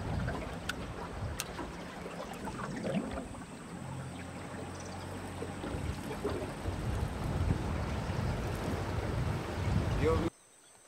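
Water washing against a small aluminium boat on a river, with wind on the microphone and a low steady hum through the middle. Two sharp ticks sound in the first second and a half.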